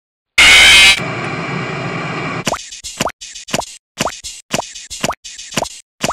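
A sudden, very loud burst of harsh noise, then a steadier hiss with a thin high tone. From about halfway it breaks into short, abruptly cut fragments repeating about twice a second, each starting with a quick rising pop: a chopped, stuttering sound-effect loop of the kind made in YouTube Poop editing.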